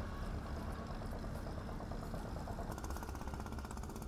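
A boat's engine running steadily at low level, a low hum with a rapid fine ticking that comes through in the second half.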